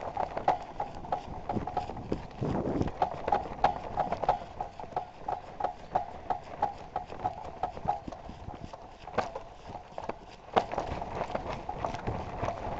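A hang glider carried at a walk, its frame and fittings knocking in step at about three knocks a second, with a short break about two-thirds of the way through.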